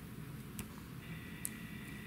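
Quiet room with two faint ticks from a plastic glitter-glue squeeze bottle dabbing glue onto paper, about half a second and a second and a half in. A faint steady high whine comes in about a second in.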